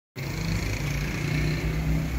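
An engine idling steadily, with a low even hum and no revving.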